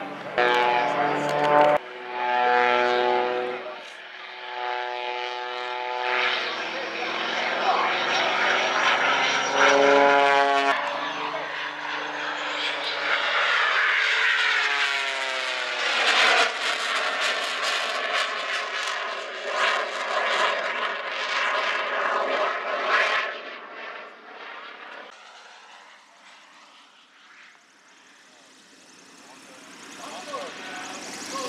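Single-engine aerobatic propeller plane flying a routine overhead, its engine and propeller note stepping up and down in pitch with power changes. A falling pitch follows as it sweeps past, and the sound fades away in the last few seconds.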